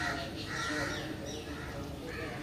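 A crow cawing, two or three harsh caws in the first second and a half.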